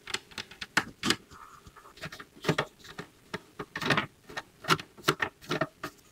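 Irregular clicks, taps and knocks of hard plastic parts being handled and fitted together: a plastic perch being pushed into place on a plastic bird feeder.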